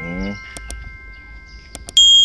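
Sound effects of a subscribe-button animation: a chime tone rings on and fades, mouse clicks sound twice about half a second in and three times just before the end, and a bright notification-bell ding starts at the very end.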